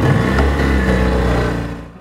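Outboard motor running hard under throttle, loud and steady, then fading away near the end.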